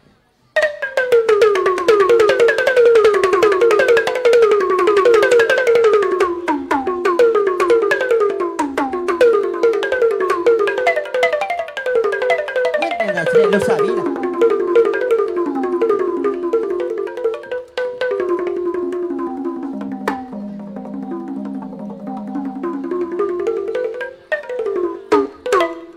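Burmese pat waing, a circle of tuned drums, playing fast melodic runs of pitched drum notes. It comes in suddenly about half a second in, after a brief silence.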